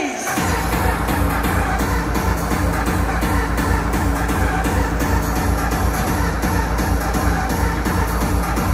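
Hardcore techno played loud over a club sound system during a DJ set. A fast kick-drum beat with heavy bass comes in about a third of a second in, after a short break, and then runs steadily.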